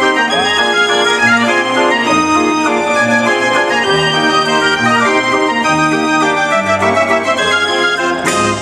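Hand-turned Dutch street organ (draaiorgel) playing a tune, with a pipe melody over a moving bass and chords.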